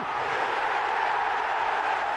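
Football stadium crowd cheering a goal, a steady wash of noise with no single voice standing out.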